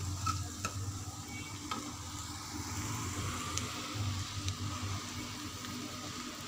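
Chopped onions, tomatoes and green chillies frying in oil in a kadai, sizzling steadily as a slotted wooden spatula stirs and scrapes through them, with a few light knocks of the spatula against the pan.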